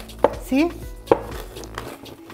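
A wooden rolling pin knocks twice on a wooden board, about a second apart, as it crushes stinging nettles to break their stinging hairs.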